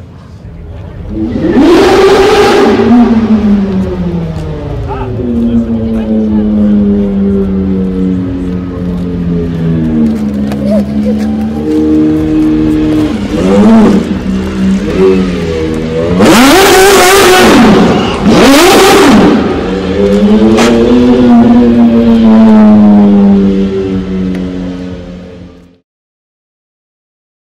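A sports car engine revving and driving, its pitch rising and falling, with loud rev bursts about two seconds in and again about two-thirds of the way through, then fading out at the end.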